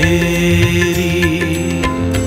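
Sikh shabad kirtan music: a long held melody note that wavers slightly, over a steady sustained drone.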